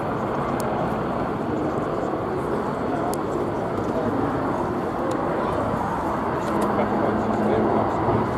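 Westland Wildcat helicopters flying at a distance: a steady rotor and turbine drone, with a low hum growing stronger near the end.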